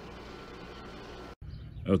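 Steady low background noise, cut off by a brief dropout of silence about halfway through. The background resumes, and a man starts speaking just before the end.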